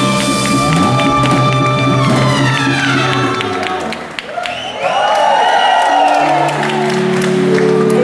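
Live band with a horn section of trumpet, trombone and saxophone over drums holding a loud final chord, which slides down in pitch and breaks off about four seconds in. The audience then cheers while the band strikes up a new held chord that builds in steps toward the end.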